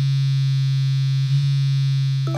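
A steady, low electronic buzzing tone, held unbroken, used as a sound effect for an incoming phone call.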